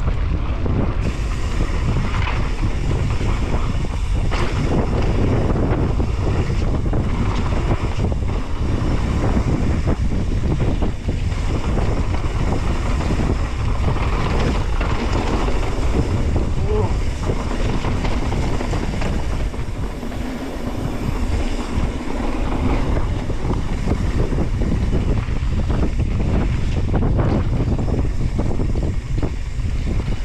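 Mountain bike riding fast down a dirt trail: heavy wind noise on the microphone over a steady tyre rumble on the dirt, with frequent short knocks and rattles from the bike over bumps.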